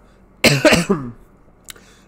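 A man coughing: one short, loud fit of coughing about half a second in, over in well under a second.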